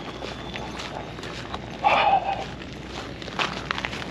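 Footsteps on gritty, icy pavement while walking, with a brief, louder rough sound about two seconds in.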